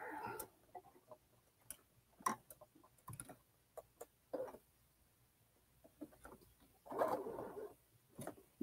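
Faint, scattered clicks and light knocks of hands working at a Baby Lock Sashiko 2 sewing machine while the needle is being brought up, with a short burst of noise near the end. The machine is not stitching.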